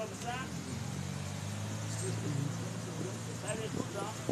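A motor vehicle's engine runs as a low, steady hum that swells slightly midway. A man's voice comes in short snatches at the start and near the end.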